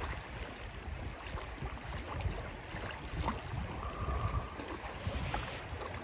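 Wind buffeting the microphone over the flow of a muddy river, with faint splashing and gurgling as a plastic bottle is held under the surface and fills with river water.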